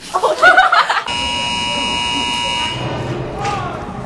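A steady electronic buzzer-like tone that starts abruptly about a second in and holds for about a second and a half before fading, preceded by a moment of voices.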